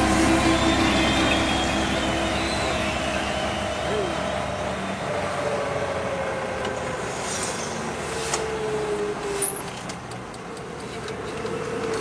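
Cabin noise inside a Lada Niva driving through town traffic: steady engine and road noise that slowly grows quieter, with the tail of a song fading out in the first second.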